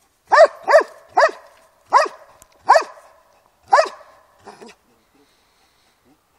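Belgian Malinois barking at a helper in a bite suit while guarding him in protection training: six sharp barks at uneven intervals over the first four seconds, then two fainter ones, then it stops.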